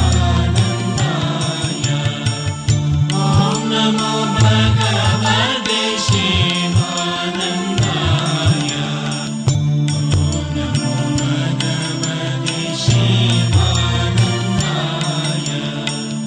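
Devotional Hindu mantra chanting set to music: a melodic chanted line over a sustained drone, with percussion keeping a steady beat of about two strokes a second.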